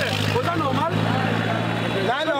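Steady low hum of a vehicle engine idling close by, under a man talking; the hum cuts off at the very end.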